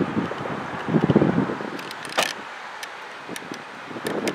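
Wind buffeting the microphone over the low rumble of the departing Amtrak Pennsylvanian passenger train. There is a louder burst about a second in and a sharp click just after two seconds.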